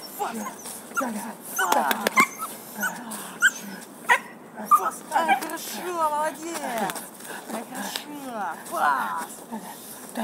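Belgian Malinois puppy, about three and a half months old, whining and yapping with short barks as it is worked up to bite and tug. Its calls come in quick, irregular bursts that slide up and down in pitch, with a few higher whines in the second half.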